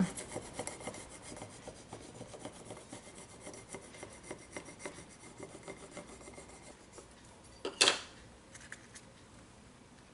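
A plastic scraper tool rubbed hard back and forth over transfer tape on a ceramic mug, burnishing adhesive foil down in many quick faint strokes. Just before the end comes one louder brief scuff, then only light handling.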